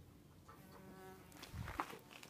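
A bee buzzing its wings, a steady hum that starts about half a second in. Near the end, louder knocks and rustling from the camera being moved.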